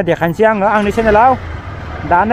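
A person's voice in drawn-out phrases, over the low, steady running of a motorcycle engine. The voice stops about one and a half seconds in, leaving the engine's rumble.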